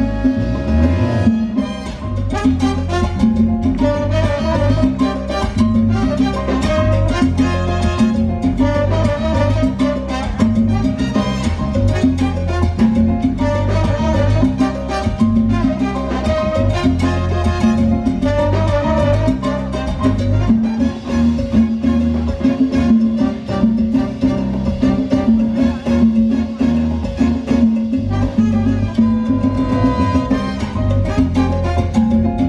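A live salsa band plays a song with congas, drum kit, keyboard, bass guitar and brass, over a steady, driving Latin beat.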